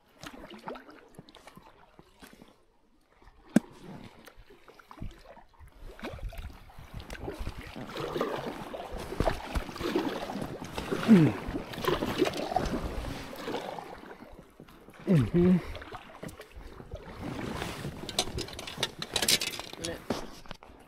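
Paddling an inflatable kayak: the blades splash and water pours off them in uneven strokes, quiet for the first few seconds, with one sharp knock about three and a half seconds in. Two short falling squeaky tones sound in the middle of the paddling.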